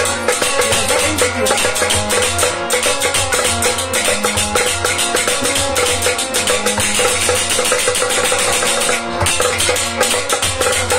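Harmonium playing a melody over a fast, steady hand-percussion rhythm in an instrumental passage of a Kashmiri Sufi song.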